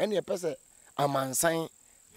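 Crickets chirring in a steady, high, thin tone, under a man's voice talking in two short bursts.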